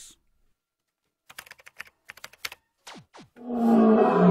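A quick run of computer-keyboard typing clicks, then two short falling whistle-like sound effects. From about three and a half seconds, a loud, long vocal yawn-roar as a man stretches with his arms raised.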